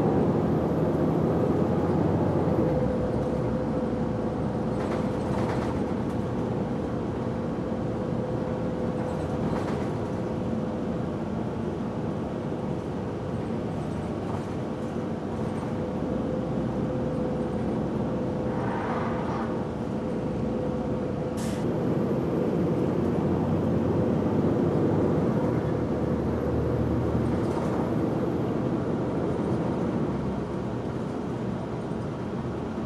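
A municipal transit bus running, heard from inside the passenger cabin: steady engine and road rumble with a constant hum. A single sharp click comes about two-thirds of the way through, and the rumble grows louder for the last third.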